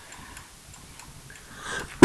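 Quiet room tone with a few faint, light ticks, and a short breathy sound near the end just before a cough.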